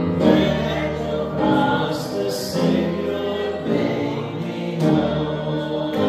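A group of voices singing a gospel hymn, each chord held for about a second before moving to the next.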